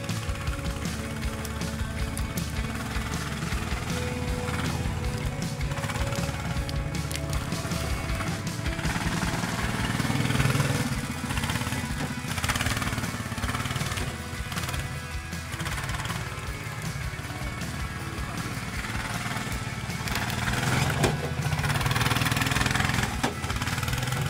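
Background music over the engine of a VEBR Huge mini tracked ATV running as it drives. The engine grows louder around the middle and again near the end.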